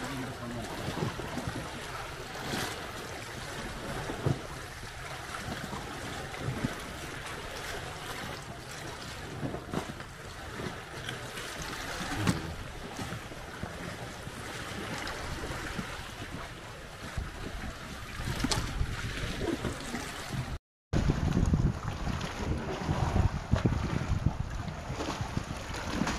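Seawater lapping and splashing against a seawall beside a small boat, with wind rumbling on the microphone, heavier in the last few seconds. A few short knocks stand out now and then.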